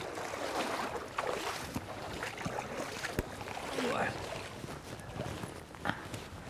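People wading through shallow lake water, the water splashing and sloshing around their legs.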